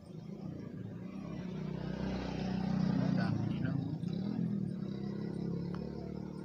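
A passing motor vehicle: a low engine hum that swells to its loudest about three seconds in and then fades.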